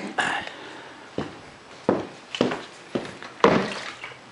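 Handling noise from a plastic cordless drill battery pack being picked up and moved: a string of short knocks and rustles about half a second apart, the loudest near the end.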